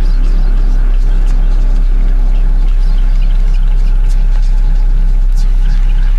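Deathstep electronic music: a loud, steady sub-bass drone under a gritty, buzzing mid-bass texture, with sparse faint high ticks on top.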